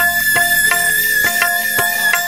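Instrumental passage of Bengali Baul folk music with no singing: one long high melody note held steady over light percussion ticking about four times a second.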